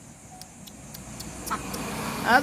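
Quiet outdoor background: a low steady hum with a few faint ticks, and a brief soft sound about a second and a half in.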